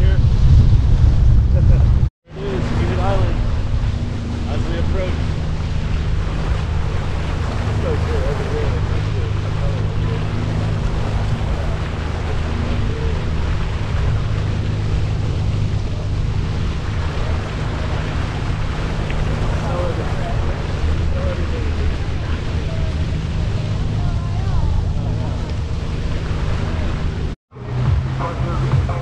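Jet ski engine running steadily under way, with rushing water and wind buffeting the microphone. The sound cuts out briefly about two seconds in and again near the end.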